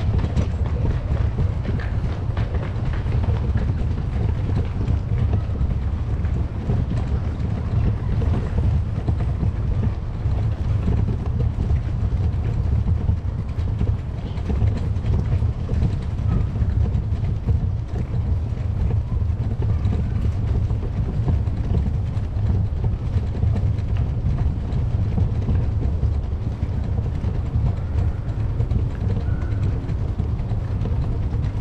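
Wind buffeting the microphone while walking: a steady, unsteady-edged low rumble with faint hiss above it.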